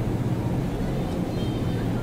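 A steady low droning hum over an even background noise, with no clear events in it, typical of a public-address system and a large gathering between a speaker's phrases.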